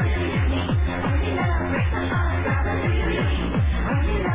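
Hard trance dance track playing: a fast, steady kick drum, about two and a half beats a second, with a sustained bass line under busy synth layers.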